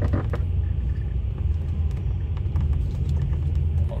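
Truck engine idling: a steady low rumble heard from inside the cab, with a few light clicks in the first half-second.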